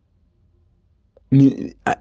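Near silence with faint room hum, then about a second and a half in a man's voice comes in loudly with a short vowel-like sound that leads straight into speech.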